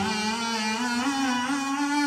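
Harmonica playing a slow, unbroken melody line that climbs step by step in pitch.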